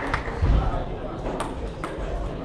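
Table tennis balls ticking a few times, sharp clicks off bats and tables, over the murmur of voices in a sports hall; a low thump about half a second in.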